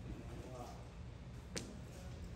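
A single sharp clack of a mahjong tile being set down or knocked against other tiles, about a second and a half in.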